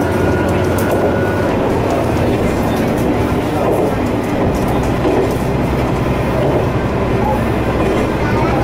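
Kanto Railway diesel railcar running at speed, heard from inside the carriage: a steady engine drone with wheel-on-rail noise and occasional faint clicks. A thin high whine fades out about a second and a half in.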